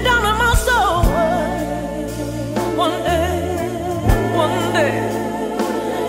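Soul song playing: a woman's voice sings long, wavering held notes over steady bass notes, with a few drum hits.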